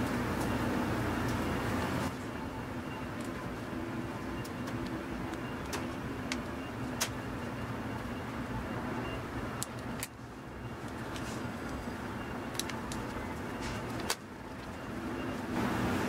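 A steady low hum with a scattering of sharp little clicks, the clicks from a seam ripper cutting through collar stitches.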